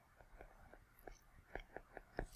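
Near silence with a few faint ticks of a stylus tapping on a tablet's glass screen as words are handwritten.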